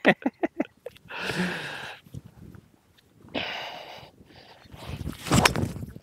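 A fairway wood swung and striking a golf ball off the turf: a short rising swish, then a sharp crack just before the end. Earlier there are two soft rushing noises.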